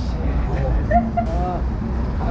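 Voices of people talking as they walk by, over a steady low rumble of street noise from nearby traffic.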